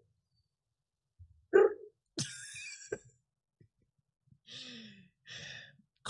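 A person's breathy vocal sounds, like sighs and exhales: a short voiced sound about a second and a half in, then a hissing breath, then two softer breathy sighs near the end.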